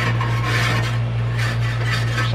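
Grill grates being scrubbed with a grill brush: repeated rasping strokes, about two a second, over a steady low hum.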